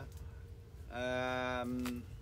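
A man's drawn-out hesitation sound, a level 'uhh' held for about a second after a short pause, with no change in pitch.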